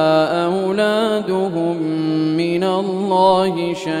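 A solo male voice chanting Quran recitation in slow, melodic tajwid style. Words are drawn out into long held notes with ornamented turns of pitch, with a brief break near the end.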